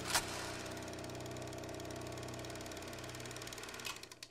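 A steady low hum of several held tones, even in level throughout.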